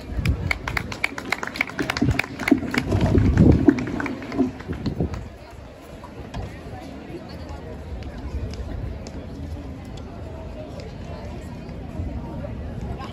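A microphone being handled on its stand: a dense run of knocks, bumps and rubbing for about five seconds, with low thumps. Then a quieter steady background of outdoor murmur.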